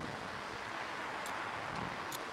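Steady rush of wind over the onboard camera's microphone as the Slingshot ride capsule swings through the air, with a faint tick a little past halfway.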